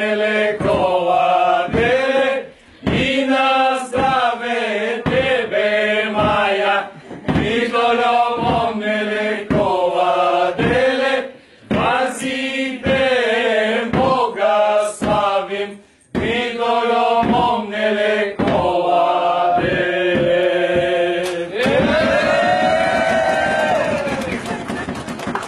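A group of men singing a Bulgarian koleda (Christmas carol) together in a chant-like style, in short phrases of about two seconds broken by brief pauses for breath, ending on one long held note near the end.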